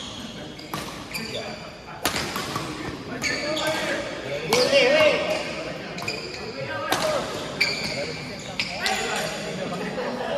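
Badminton rackets striking a shuttlecock during a doubles rally: a string of sharp hits about one to two seconds apart, ringing in a large hall.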